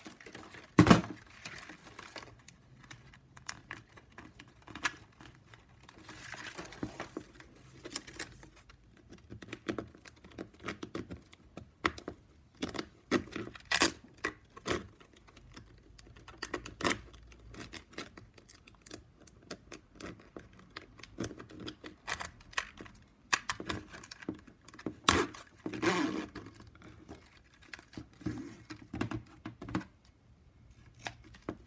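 Plastic strapping band strips rustling, scraping and clicking irregularly as they are tucked and pulled through a tight weave, with a sharp scissor snip about a second in.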